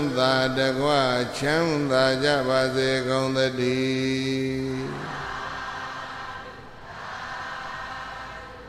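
A man's voice chanting Buddhist verses in Pali, solo, with long held notes that bend in pitch; the chant stops about five seconds in, leaving a steady background noise.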